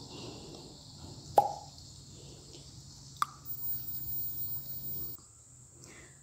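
A steady high insect chorus, crickets or similar, in a sunny garden, broken by two sharp clicks about a second and a half and three seconds in, the first with a brief ringing note. The background cuts off suddenly about five seconds in.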